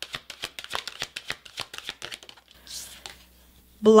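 A deck of large oracle cards being shuffled in the hands: a quick run of soft card slaps and flicks, several a second, which stops about two and a half seconds in, followed by a short, softer brushing of cards.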